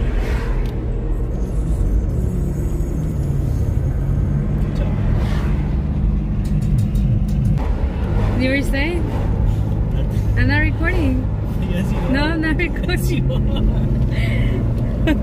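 Steady road and engine rumble inside a moving car. From about eight seconds in, a song with a singing voice plays over it, its melody rising and falling in repeated short phrases.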